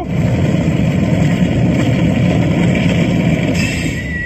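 Loud, steady rumbling, machine-like sound effect played over a PA system for the villains' excavation, starting abruptly; near the end a higher hiss joins it.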